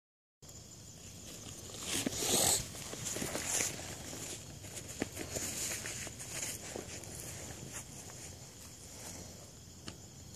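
Handling noise: soft, uneven rustling and scattered small clicks from a hand moving close to the microphone, loudest about two seconds in.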